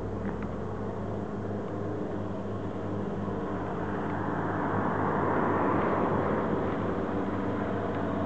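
A passing motor vehicle: its noise swells gradually to a peak about five to six seconds in, then eases off, over a steady low engine hum.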